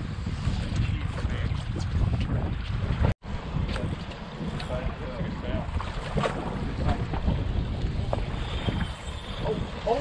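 Wind buffeting the microphone with a steady low rumble, faint voices underneath. The sound cuts out completely for a moment about three seconds in.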